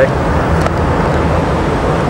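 Steady vehicle cabin noise inside a Toyota Tarago van: a continuous low engine and road rumble under an even hiss.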